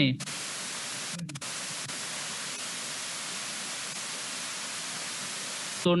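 Steady hiss of microphone static, cut out briefly about a second in.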